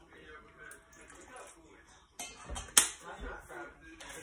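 A bottle set down on a kitchen countertop with one sharp knock a little before three seconds in, after some handling noise, over faint voices in the background.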